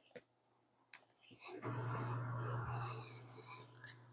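A sharp click from the tablet being handled, then a low murmur under the breath lasting a couple of seconds, and another sharp click near the end.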